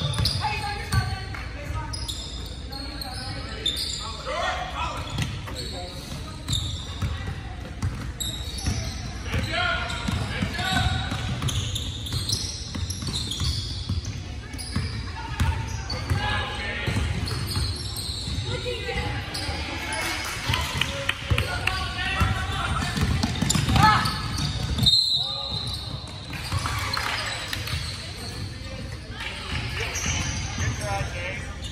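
A basketball bouncing on a hardwood gym floor during a game, with indistinct shouts and chatter from players and spectators echoing in the large hall.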